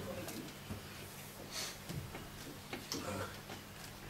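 Quiet room tone with a steady low electrical hum from the sound system, broken by a few short, faint murmured vocal sounds.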